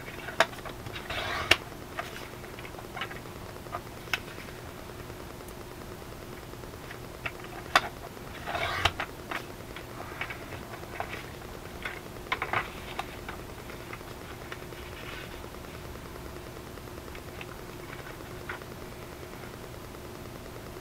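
Sliding-blade paper trimmer cutting cardstock: a few short scraping strokes of the blade, with scattered sharp clicks and taps as the paper and trimmer are handled.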